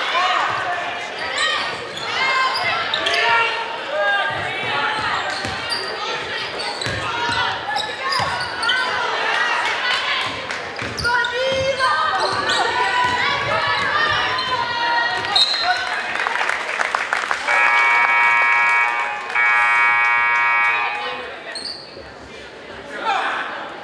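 Basketball being played on a hardwood gym court: sneakers squeak and a ball bounces, with voices calling in a large echoing hall. Near the end, a scoreboard buzzer sounds twice, each blast about a second and a half long, stopping play.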